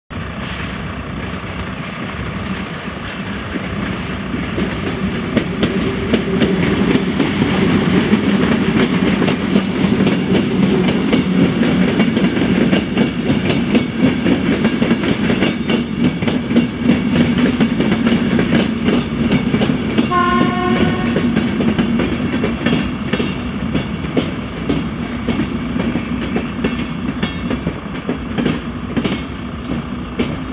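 A PKP Intercity passenger train runs through the level crossing, its wheels clattering over the rail joints above a steady rumble that builds from a few seconds in. A train horn sounds once, for about a second and a half, about two-thirds of the way through.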